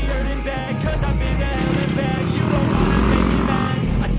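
Background music over the engine of a dirt bike racing past on a dirt motocross track, getting louder in the second half.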